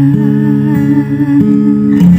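Steel-string acoustic guitar picking chords that change about three times, under a woman's wordless held vocal line with vibrato.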